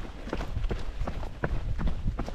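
Footsteps of trail runners running on a rocky dirt trail, about three footfalls a second, over a low rumble.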